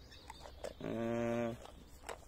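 A man's drawn-out hesitation sound, a flat 'eee' held for under a second in the middle of a pause in talk.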